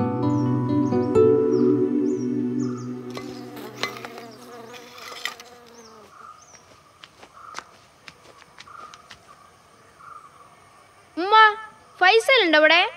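Soft mallet-percussion music fading out over the first few seconds, leaving an insect buzzing faintly with scattered light clicks. Near the end comes a short vocal sound that slides up and down in pitch.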